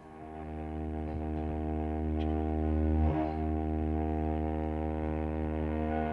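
A low, sustained instrumental chord held as a steady drone, swelling in over the first second and changing chord at about three seconds.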